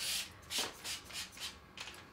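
The inner metal tube of a telescopic light stand sliding up through its loosened plastic knob collar as it is extended by hand. It makes a run of about six short, soft rubbing scrapes.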